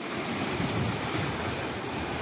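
Water rushing and churning through an open concrete channel at a water treatment plant, a steady, even rush.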